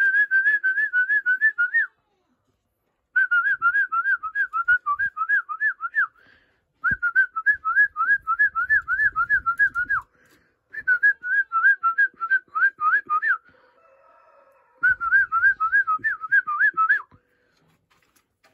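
A person whistling a fast warbling call to bring pigeons down to their feed, in five bursts of two to three seconds each, with short pauses between them.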